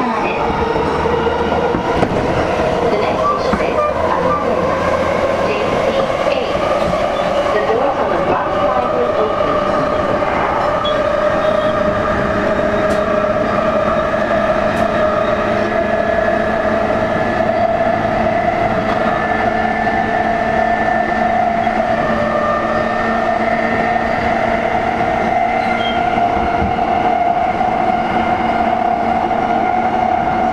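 Running sound heard inside an E233-series electric train's motor car: the steady rumble of the wheels on the rails under the whine of the traction motors. The whine climbs slowly in pitch as the train gathers speed.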